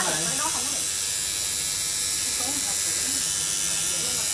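Electric tattoo machine buzzing steadily as the artist works the needle into the skin of a client's back.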